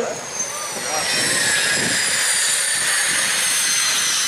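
Twin jet engines of a jet-powered show truck running, a high whine over a steady rushing noise, the whine sliding slowly down in pitch.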